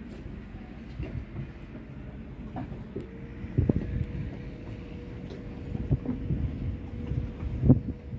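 Irregular thumps and knocks of footsteps on a fibreglass boat deck over a low rumble, with a steady hum joining about three seconds in.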